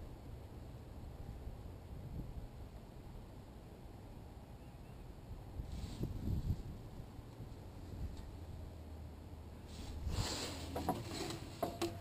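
Faint handling noises of a fiber optic inspection camera probe and its rod being worked into a backhoe gearbox: light scrapes and clicks against metal, with a short burst about halfway through and a cluster of scrapes and clicks near the end, over a low steady rumble.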